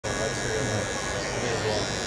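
Electric hair clippers running steadily while cutting hair, with voices talking in the background.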